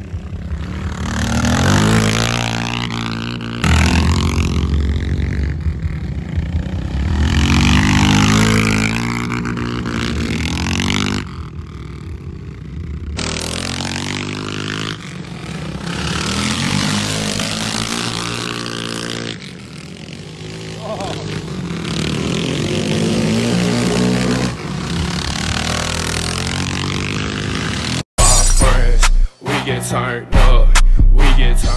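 Dirt-track motorcycle engines revving up and backing off again and again as the bikes ride around the oval, the pitch climbing with each run of throttle and falling as it closes. Near the end the sound cuts abruptly to loud music.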